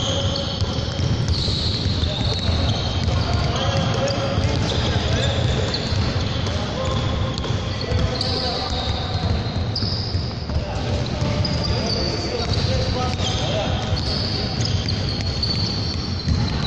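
Basketballs bouncing and being passed on a hardwood gym floor in an echoing hall, with a steady clatter from several balls at once and players' voices in the background.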